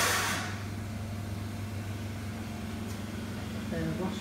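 Steady low electrical hum in a small tiled washroom, with a brief hiss in about the first half second.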